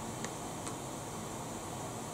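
Electric pedestal fan running with a steady airy hiss, with two faint light ticks in the first second as an eyeshadow palette is handled and opened.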